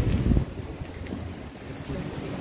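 A pause between spoken phrases, filled with low rumbling room noise picked up by the microphone, heavier for about the first second and a half and then fainter.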